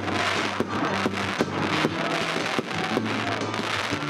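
Aerial fireworks bursting overhead: a dense crackle with many sharp bangs at irregular intervals, over background music with low held notes.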